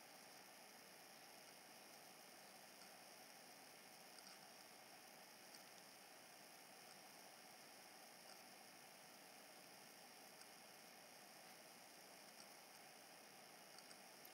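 Near silence: faint steady hiss of room tone, with a few very faint ticks.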